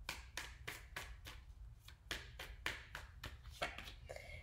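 A deck of tarot cards being shuffled in the hands: a series of soft, irregular card slaps and clicks, about three a second.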